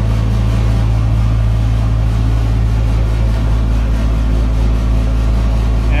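Reefer trailer's refrigeration unit running with a steady low hum, heard from inside the trailer box.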